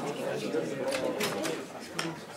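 Indistinct chatter of several people talking at once, with a few brief sharp noises a little after the middle.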